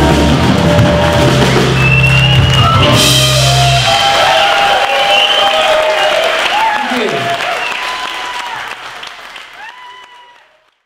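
Live rock band of electric guitar, bass guitar and drums playing the final bars of a song and stopping about four seconds in. Audience applause and shouts follow, fading out toward the end.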